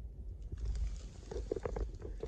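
Low wind rumble on a handheld phone microphone, with irregular clicks and rustles of handling noise that start about half a second in and grow busier as the camera is moved.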